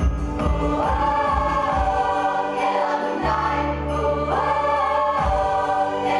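A stage ensemble of young actors singing a musical number together in chorus over instrumental accompaniment, with long held vocal notes and a sustained bass line.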